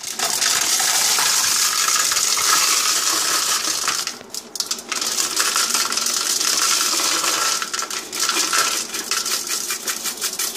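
Metal cutlery and wire dishwasher racks clattering and clinking as dishes are handled inside an open dishwasher. There is a dense run of sharp metallic clinks with a brief lull about four seconds in.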